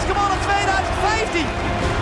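A man's sports commentary voice over background music.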